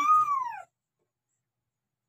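A woman's short high-pitched exclamation, "ah!", rising then falling in pitch over about half a second, right at the end of her speech; then the sound cuts out completely.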